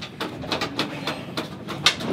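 A series of light clicks and taps, several a second at irregular spacing, over a faint steady background.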